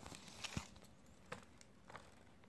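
Near silence with three faint, short handling clicks.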